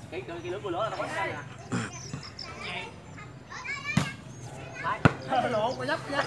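Young men's voices calling out on and around a volleyball court, with two sharp slaps of the volleyball being hit, about four seconds in and again a second later; the second hit is the loudest sound.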